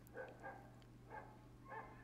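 Near silence: faint room tone with a steady low hum and a few faint, short sounds.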